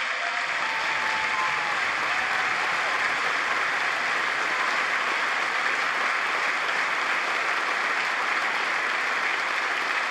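A large audience applauding, a dense steady clapping that holds at an even level throughout.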